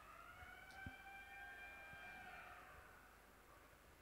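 Near silence, with a faint held tone of several pitches that bends slightly and fades out about two and a half seconds in.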